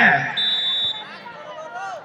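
Referee's whistle: one short, steady blast of about half a second, signalling the next serve.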